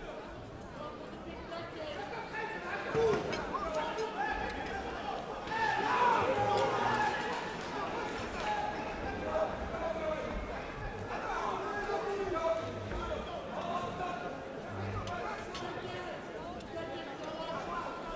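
Many voices shouting and chattering together in an indoor arena crowd, swelling about six seconds in, with a few sharp knocks among them.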